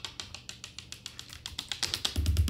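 Rapid clicking of keyboard keys, about ten quick clicks a second, over a faint steady low hum.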